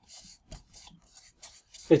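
Felt-tip marker writing a word on a large white sheet, a rapid run of short scratchy rubbing strokes. A man's voice begins speaking at the very end.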